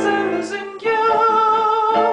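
A piano-and-voice cover of a rock song: piano chords, then about a second in a single long sung note held over the piano.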